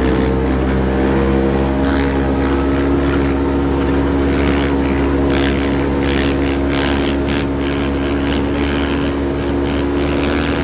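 Side-by-side off-road vehicle's engine running at a steady speed, heard from inside the cab while driving over sand dunes. Bursts of rushing, hissy noise come in through the middle.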